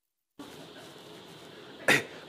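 A moment of silence, then faint studio room tone, and near the end a single short cough.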